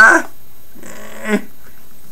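A man's wordless voice: a loud cry at the start, then a shorter second sound about a second in.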